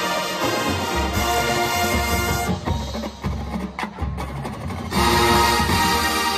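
A college marching band playing live: brass chords over drums and front-ensemble percussion. The full sound thins out around the middle, leaving a few sharp percussion strikes, then the whole band comes back louder about five seconds in.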